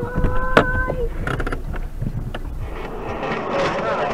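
Dashcam audio at a road crash: a steady held tone for about the first second, crossed by a sharp knock, then steady engine and road noise heard from inside the car, with scattered clicks.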